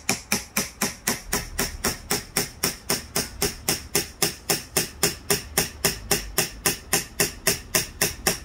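A small claw hammer tapping the spine of a wood-carving knife (changkal), driving the blade into the board to cut a character's outline. The hammer strikes are sharp and evenly paced, about four a second.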